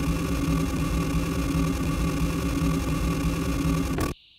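A loud, dense wash of electronic noise from the music soundtrack, deep and engine-like, with a few steady tones running through it. It cuts off suddenly at the end.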